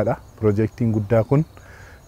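A man speaking Afaan Oromo on a close clip-on microphone. His phrase stops about one and a half seconds in, leaving a brief pause.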